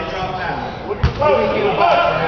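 A single basketball bounce on a hardwood gym floor: one sharp thud about halfway through, over the voices of spectators.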